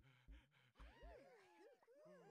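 Cartoon characters' wordless vocalising: a gasp, then squeaky, wavering calls that slide up and down in pitch. A few short low thuds come in the first second.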